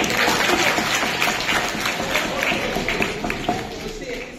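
A group clapping: a dense patter of applause that starts at once and dies down near the end.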